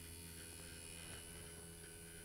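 Faint steady electrical hum with a low buzzing tone, unchanging throughout.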